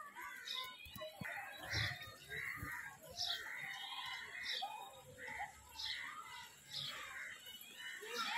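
Birds chirping: short, sharp calls repeat about once a second, with faint voices in the background.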